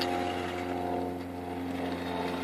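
Electric drive motor and gears of a Maisto Tech Baja Beast RC buggy whining at a steady pitch as it drives under throttle.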